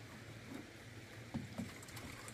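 Water sloshing in a plastic jug as it is handled and lifted, with two dull knocks about one and a half seconds in.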